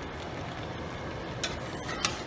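Curry goat simmering in a stainless steel pan: a steady bubbling hiss, with two short sharp sounds in the last half second as a metal spoon goes into the pan to stir.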